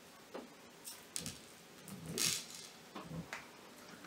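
Small plastic toy scoops and pieces handled on a tabletop: a few light clicks and knocks, with a louder rustling scrape about two seconds in.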